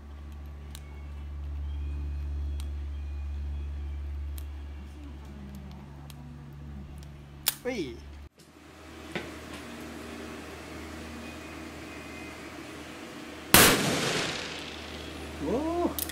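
Light metallic clicks as cartridges are loaded into the cylinder of a Smith & Wesson .357 Magnum revolver. Near the end comes a single loud shot from the revolver, with a short ringing echo after it.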